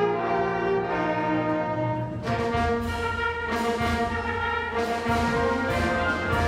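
High school wind symphony playing a Christmas piece: sustained brass and woodwind chords, with percussion strokes joining about two seconds in and recurring every second or so.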